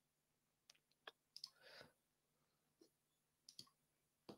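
Near silence with a few faint, scattered clicks from a computer mouse, about six in four seconds.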